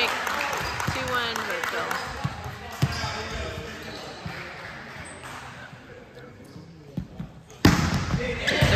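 A volleyball served with a single sharp hand smack near the end, the loudest sound. Before it, voices of players and onlookers in the gym trail off, with a few scattered thuds of a ball on the hardwood floor.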